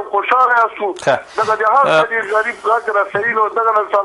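Speech only: a voice talking continuously, thin and band-limited like a radio or phone feed, with a brief burst of noise about a second in.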